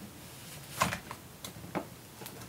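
Short plastic clicks and knocks as a laptop's plastic base is handled and shifted on a desk: one sharper click a little under a second in, then a few softer ones.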